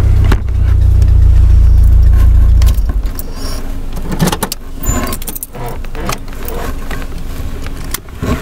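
Car being driven, heard from inside the cabin: a loud low rumble for the first three seconds that then drops away sharply, leaving lighter rattling and clicking.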